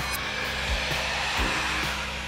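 A transition sound effect: a steady hiss of noise that starts suddenly and thins out near the end, over background music with low, regular thumps.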